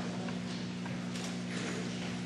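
Steady low electrical hum with a few faint knocks over the hall's room noise.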